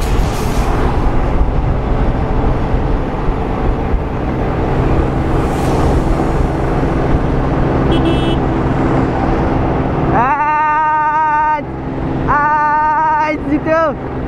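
Wind rushing over a helmet-mounted microphone, with the steady hum of a small scooter engine and tyre noise while riding at speed. Near the end come two drawn-out vocal calls, each about a second and a half long.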